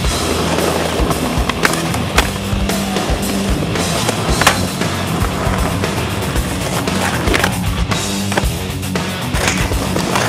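Skateboard wheels rolling on stone paving, with several sharp clacks of the board popping and landing, over music with a steady repeating bass line.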